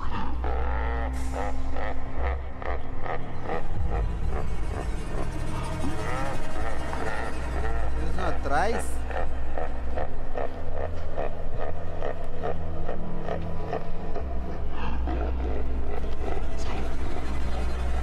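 A monster character's long, drawn-out laugh: rapid repeated pulses that waver up and down in pitch, over low droning suspense music.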